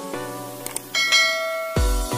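Background music: plucked pitched notes, a bright ringing bell-like chime about halfway through, then a deep electronic bass beat coming in near the end.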